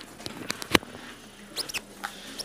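Footsteps on a hard floor: a few sharp clicks, the loudest under a second in, then short high squeaks that fall in pitch about a second and a half in.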